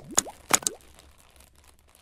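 Logo-animation sound effects: four quick pops in the first second, two of them trailed by short upward pitch sweeps like a cartoon boing, then fading out.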